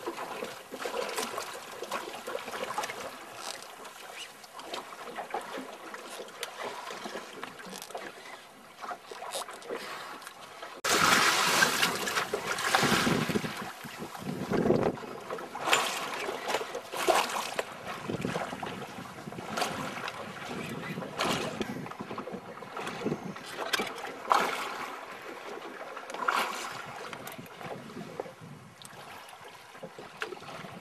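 Sea water sloshing and slapping against a small boat's hull, with wind on the microphone and scattered knocks, over a faint steady hum. The noise turns suddenly louder and rougher about eleven seconds in.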